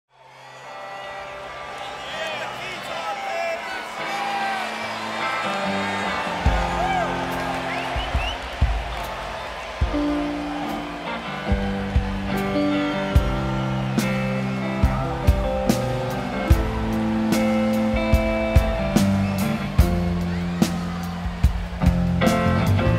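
Live rock band with keyboards, guitar, bass and drums starting a song in an arena over a cheering crowd. The sound fades in on crowd noise, low bass and drum notes come in about six seconds in, and sharp drum hits keep a steady beat through the second half.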